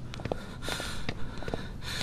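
A person's two short, sharp in-breaths, with a few light clicks before them.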